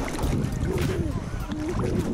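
Seawater sloshing and lapping against a camera held at the water's surface, a steady wash of water noise on the microphone.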